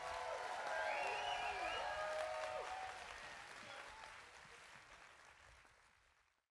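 Live audience applause with voices calling out and cheering, fading out steadily to silence.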